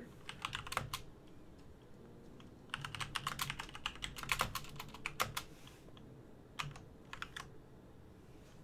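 Typing on a computer keyboard in bursts. A few keystrokes come first, then a pause of a second or two, then a fast run of typing, and a few more keystrokes near the end.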